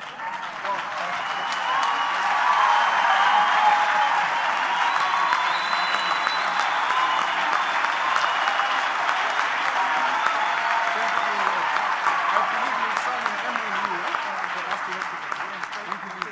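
Audience applauding and cheering, swelling over the first couple of seconds and dying away near the end, with high drawn-out calls heard above the clapping.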